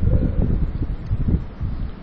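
Low rumbling microphone noise under a pause in a recorded talk, with a faint brief voice sound in the first half; the rumble dies down toward the end.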